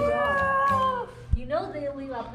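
A high child's voice holds one long, slightly falling vowel for about a second and a half, then breaks into short babble.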